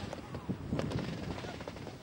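Wind rumbling on the camcorder microphone, with faint voices mixed in.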